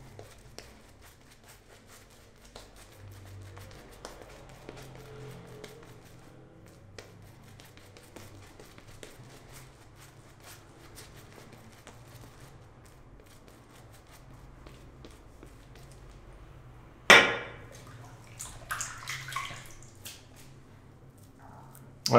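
Shaving brush working lather over a face, giving faint wet crackling and ticking over a steady low hum. A sudden louder noise comes about 17 seconds in, followed by a few weaker sounds.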